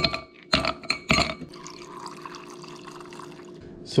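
Ice cubes dropped into a plastic tumbler, three clunks about half a second apart, then liquid poured into the tumbler for about two seconds, filling it.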